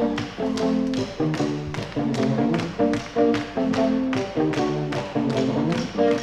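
Live indie rock band playing a song's intro: electric guitars pick a line of notes and chords over a steady tapping beat, about three taps a second.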